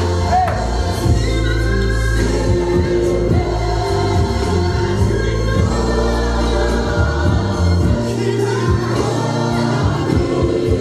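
Gospel song with choir singing over a sustained bass line.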